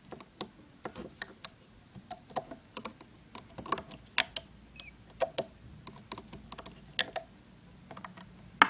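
Irregular small clicks and taps of a loom hook and stretched rubber bands against the plastic pegs of a Rainbow Loom as bands are looped.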